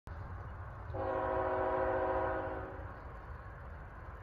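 Air horn of an approaching CSX GE ET44AH locomotive, sounding one blast of about two seconds, starting about a second in, with several notes sounding together as a chord. A low rumble runs underneath.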